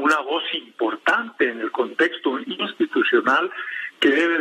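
Only speech: a man talking in Spanish over a telephone line, the voice narrow and thin.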